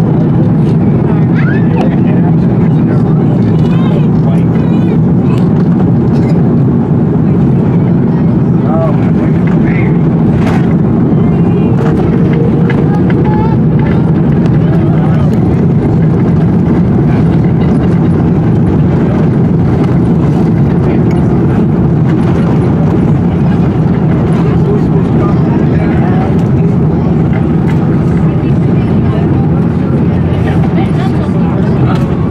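Loud, steady low rumble inside the cabin of an Airbus A330-200 as it lands and rolls down the runway: engine and airflow noise heard through the fuselage.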